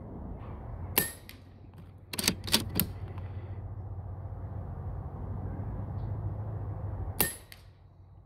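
Pellet air rifle fired from the bench: a sharp crack about a second in and another near the end, with a quick run of clicks between them.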